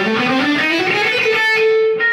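Electric guitar playing a fast run that climbs in pitch and ends on a note held for about half a second.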